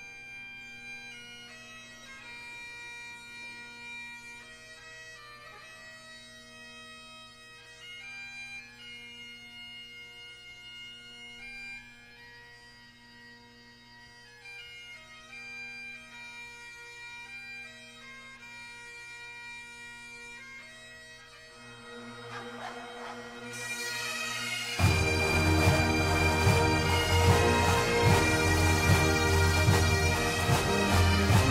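A solo Highland bagpipe plays a slow melody over its steady drones. Near the end the sound swells, and about 25 s in the massed pipes, drums and military band come in together, much louder.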